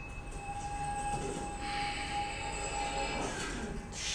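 Thriller film soundtrack playing through the speakers: a single steady high tone held for about three seconds, with a soft rushing hiss swelling in under it halfway through, both fading out shortly before the end.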